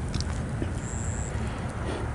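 Outdoor background noise: a steady low rumble of distant road traffic, with a faint thin high whistle about a second in.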